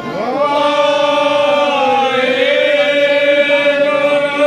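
Devotional chanting on long held notes. A new phrase begins with a rising swoop just after the start, then holds steady with a slight dip in pitch around the middle.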